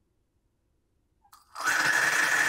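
Near silence, then about a second and a half in, a gummy bear dropped into molten potassium chlorate ignites: a sudden, loud, steady rushing hiss with a steady whistle running through it. The chlorate is oxidising the candy's sugar into water and CO2 gas.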